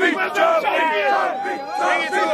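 A football team of young men chanting and yelling together in a tight group, many voices overlapping. One voice holds a long shout through the second half.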